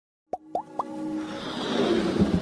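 Animated-logo intro sound effects: three quick pops rising in pitch within the first second, then a swelling whoosh that builds up toward the start of the music.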